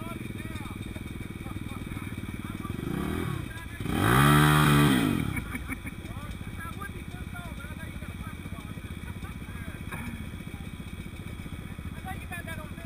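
Dirt bike engine idling steadily, with one throttle rev about four seconds in that climbs in pitch and drops back over roughly a second and a half.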